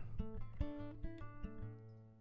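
Acoustic guitar picked lightly: a short run of separate plucked notes in the first second and a half, ringing and fading away toward the end.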